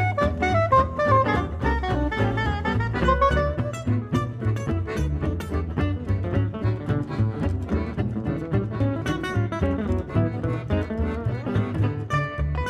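Gypsy jazz combo playing live: acoustic guitars keep up a steady strummed swing rhythm over a strong bass line, with accordion. A saxophone melody leads for the first few seconds and then gives way to the guitars.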